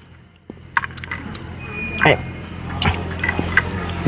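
Frogs sizzling on a charcoal brazier's wire grate, with scattered light clicks of chopsticks and tongs against the grate over a steady low hum.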